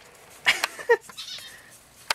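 Felt-tip marker squeaking on paper while writing, two short squeaks about half a second and a second in.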